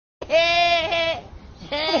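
Young goats bleating with a human-like, laugh-like voice. One long bleat of about a second starts just after the beginning, and a second bleat starts near the end.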